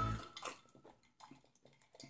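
Background music fades out at the very start, then near silence with a few faint gulps from two people drinking water from cups.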